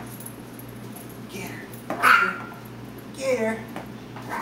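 Chihuahua puppy yipping: a faint short yelp, then a loud high yip about halfway through.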